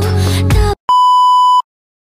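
Background music with a melodic line cuts off abruptly. A moment later a single steady electronic beep, a censor-style bleep, sounds for under a second and stops sharply.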